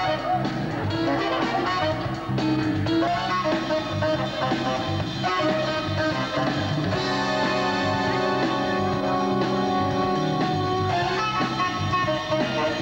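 A live jazz band playing an instrumental piece, with electric guitar to the fore over drum kit, keyboards and a horn. Several long held notes sound in the second half.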